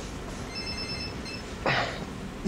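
A telephone in the advert rings once with a short electronic ring, several steady high tones together lasting just under a second.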